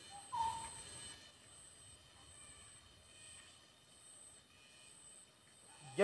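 Faint rural outdoor ambience: a single short bird call about half a second in, over a steady high-pitched insect buzz.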